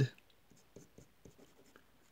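Pen writing on paper: a few faint, short scratchy strokes as a short label is written.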